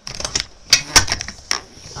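Several sharp taps and clicks from hands handling a bound black paper envelope mini album on a cutting mat, the loudest about three-quarters of a second and a second in.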